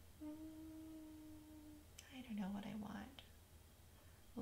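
A woman humming one steady, quiet note for about a second and a half, then a single soft click and a brief low mumbled vocal sound.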